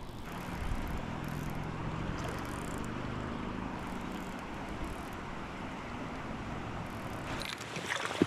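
Steady outdoor rushing noise, an even hiss with a faint low hum through the first half.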